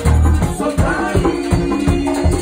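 Live merengue típico band playing loud: accordion and electric bass over a steady beat with shaker-like percussion, and singers on microphones.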